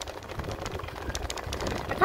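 Low wind rumble on the microphone with many light, irregular clicks and rattles from a bicycle being ridden with the phone held close.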